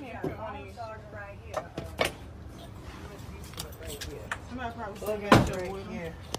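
Indistinct voices talking inside a van, with a sharp knock about two seconds in and a loud bang a little after five seconds.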